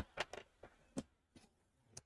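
A few faint, short clicks and taps from a paper trimmer being handled while paper is lined up under its cutting arm.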